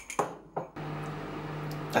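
Samsung microwave oven starting up after a click and then running with a steady hum, about three-quarters of a second in.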